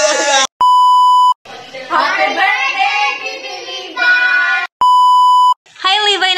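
Two identical electronic beeps, each a steady single tone just under a second long, about four seconds apart, with people's voices greeting in between.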